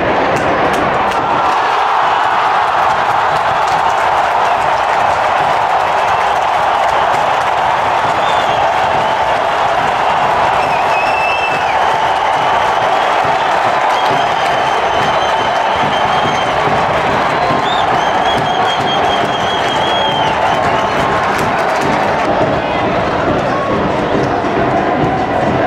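Football stadium crowd heard from the stands: a steady, loud noise of thousands of fans cheering and chanting, with a few thin, high whistling tones over it in the middle.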